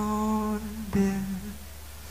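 A male singer's voice holding long wordless notes into a microphone, in two phrases, the second breaking off about a second in and fading, over a low steady note.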